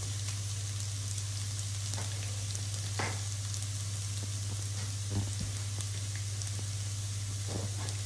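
Minced garlic sizzling steadily in hot oil in a nonstick frying pan as it toasts, over a steady low hum. A few light knocks of the spatula against the pan, about three seconds in, again after five seconds and near the end.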